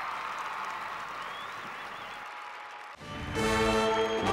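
Audience applauding; about three seconds in the applause cuts off and music with sustained chords begins.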